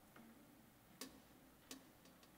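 Near silence in a large hall, broken by two faint sharp clicks, one about a second in and one near the end.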